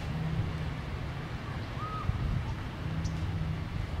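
Outdoor ambience dominated by a continuous low rumble of wind on the microphone, with a faint on-off low hum. About halfway through there is one short, faint high note.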